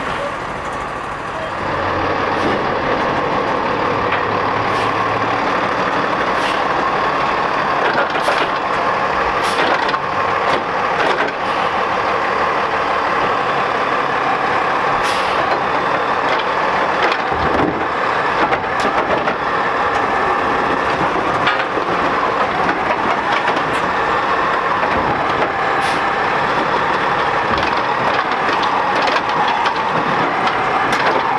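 Peterbilt 320 garbage truck running with its engine held at a raised, steady speed and a steady whine from the hydraulics of its Dadee Scorpion automated side-loader arm. Loudness steps up about two seconds in, and there are a few short hisses or clunks along the way.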